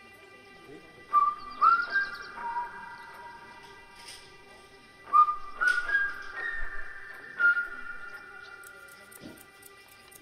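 Cheerful melodic whistling in two short phrases, about a second in and again about five seconds in. Each phrase opens with a quick upward slide and settles into held notes, echoing as if it rang through a forest.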